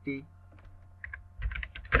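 Computer keyboard typing: a quick run of keystrokes in the second half, entering "-test" into a text field.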